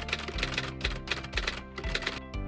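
Background music with a steady beat, over a fast run of typewriter-style key clicks, about six a second: a typing sound effect.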